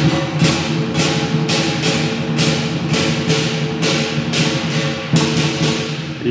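Lion dance percussion ensemble playing: a big lion drum with gong and clashing cymbals, the cymbal crashes coming evenly about twice a second.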